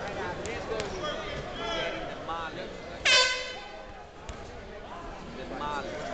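A single short, loud horn blast about three seconds in, the ring's timing horn signalling the start of the round, over voices and shouts around the ring.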